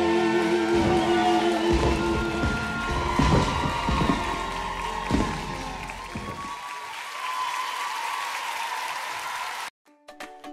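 The song's final held chord ends about two seconds in, followed by a studio audience applauding. Just before the end the sound cuts abruptly to a light plucked-string tune.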